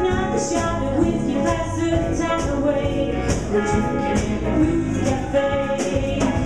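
Live blues band playing an instrumental passage: harmonica lines over electric guitar, bass and a drum kit, with cymbal strokes keeping time.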